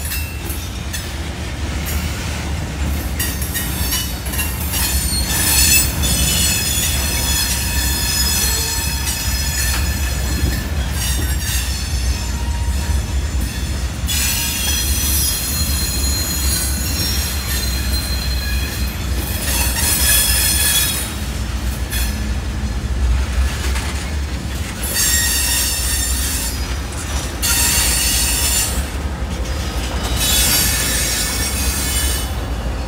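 Freight train cars rolling past, their wheels squealing in high, ringing tones that come and go in long spells over a steady low rumble.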